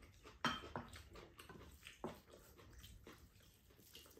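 Quiet table-eating sounds: chewing, with small clicks of chopsticks and spoons against ceramic bowls. The sharpest clicks come about half a second in and again just after two seconds.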